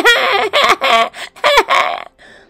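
High-pitched, wavering wails of crying for two baby twins, in about three loud bursts with the pitch sliding up and down.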